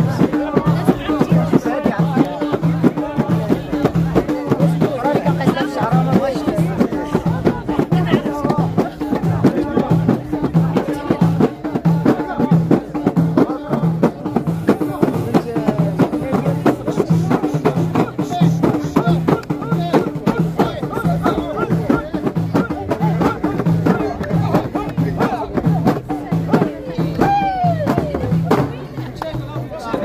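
Ahidous troupe beating large frame drums (allun) in a steady repeating rhythm while men sing together over it. The drumming stops shortly before the end, leaving crowd voices.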